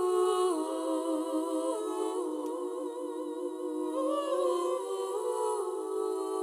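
Multi-tracked a cappella female voices singing a wordless, humming accompaniment in close harmony, holding sustained chords that shift step by step every second or two.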